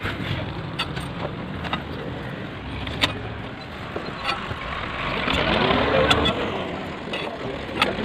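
A motor vehicle passing, louder between about five and seven seconds in, over a steady outdoor background with scattered sharp clicks.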